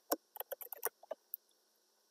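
Computer keyboard being typed on: a quick, irregular run of light key clicks that stops about a second and a half in.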